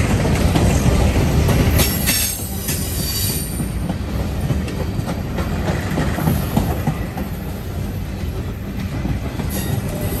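Freight train's steel coil cars and boxcars rolling past close by: a steady rumble and clatter of steel wheels on rail. A high squeal rises over it about two seconds in and again near the end.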